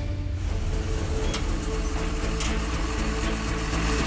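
Television news programme opening theme music with a steady beat over sustained notes and a deep low rumble.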